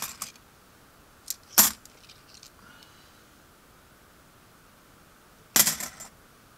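Kennedy half dollar coins clinking as they are handled off a roll and set on a pile. There is a light tick and then one sharp clink about a second and a half in, and a quick run of clinks near the end.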